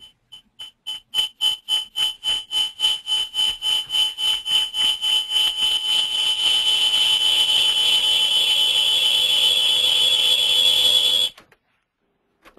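Audio feedback on a conference-call line: a high-pitched tone that pulses, the pulses coming faster and louder until they merge into a steady howl, which cuts off suddenly near the end.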